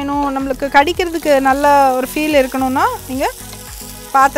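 Quinoa and chopped vegetables sizzling in a nonstick frying pan and being stirred with a wooden spatula, under background music whose gliding melodic line is the loudest sound.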